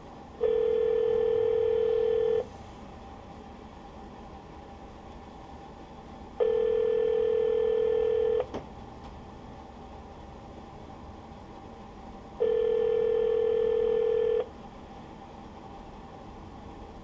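North American telephone ringback tone: three 2-second rings about 6 seconds apart, the sign that the transferred call is ringing an extension that nobody answers. A faint click follows the second ring.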